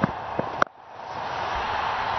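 Steady background noise of a cricket broadcast, with a few sharp knocks in the first half-second. The sound then drops out abruptly and the noise builds back up.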